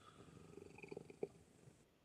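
Domestic cat purring faintly, with a soft click just after a second in; otherwise near silence.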